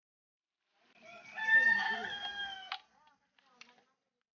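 A rooster crowing once: a pitched call of about two seconds, starting about a second in and cutting off abruptly, followed by a few faint clicks.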